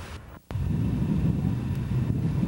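Outdoor camcorder sound: a steady low rumble of wind on the microphone. It starts abruptly after a brief dropout and a sharp click about half a second in, where the tape is spliced.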